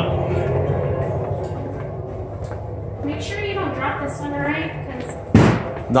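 Quiet voices in the background, then a single sharp thump a little over five seconds in.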